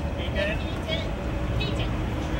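Outdoor ambience on a public plaza: a steady low rumble with brief snatches of distant voices.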